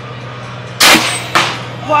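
Compressed-air apple cannon firing: one loud sharp blast about 0.8 s in, then a second, shorter bang about half a second later.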